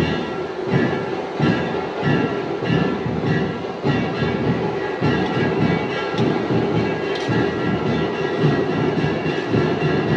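A perforated steel ladle scraping and tossing crumbled khaman around a large steel kadai in a steady rhythm, about two strokes a second, over background music.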